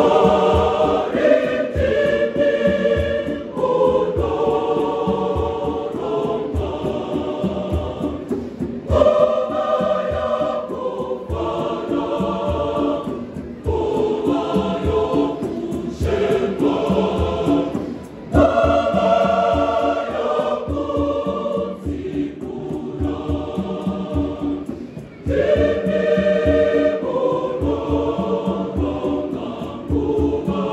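Large mixed choir singing a gospel song in parts, with fresh phrases entering strongly several times. Conga drums beat underneath.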